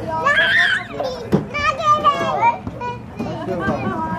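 Young children's voices calling out and chattering as they play, with one sharp click or knock about a second and a half in.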